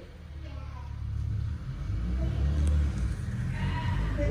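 A car engine running at low revs, a steady low rumble that grows louder over the first two or three seconds, with faint voices in the background.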